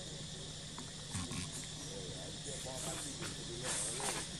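Forest ambience: a steady high insect drone, with faint chirping calls or distant voices in the background. Short rustling hisses come about a second in and, louder, near the end.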